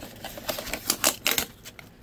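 Thin clear plastic storage bin being handled as its cardboard label sleeve is slid off: a quick run of light clicks and crackles from the flexing plastic and sliding card.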